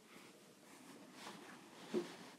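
Faint rustling of a cotton tea towel being lifted off a mixing bowl, with a short soft bump near the end.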